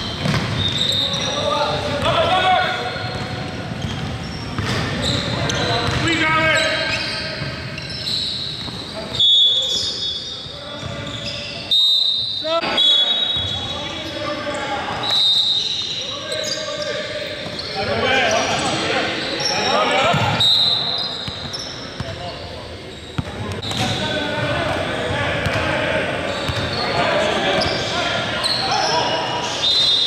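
Basketball being dribbled and passed on a hardwood gym floor, with short high sneaker squeaks as players cut and stop, all echoing in a large hall.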